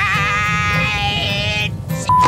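An old woman's high-pitched, quavering laugh, voiced for a cartoon character, which breaks off about a second and a half in.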